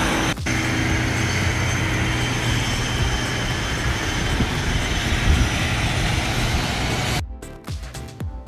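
Loud, steady aircraft engine noise on an airport apron, an even rush with a steady whine, which cuts off suddenly about seven seconds in, where music with a beat takes over.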